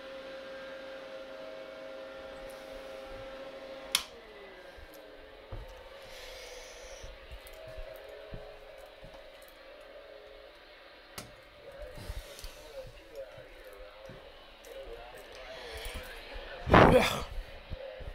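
Steady hum with a whine from bench electronics, cut off by a sharp click about four seconds in, the pitch falling away as it winds down. Small handling clicks follow, then a loud bump near the end.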